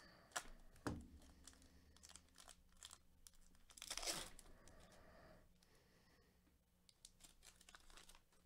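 Glossy plastic wrapper of a Panini Hoops basketball card pack crinkling as it is handled, with scattered crackles and a short, louder rip about four seconds in as the pack is torn open.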